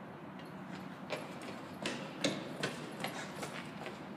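Footsteps on a concrete floor: a run of short, sharp steps, about two to three a second, starting about a second in.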